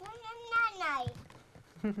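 A toddler's long whine, rising slightly and then falling, lasting about a second. A short adult laugh follows near the end.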